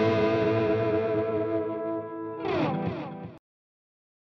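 Distorted electric guitar lead holding a long note with vibrato that slowly fades, then two quick falling slides in pitch, before the sound cuts off abruptly about three and a half seconds in.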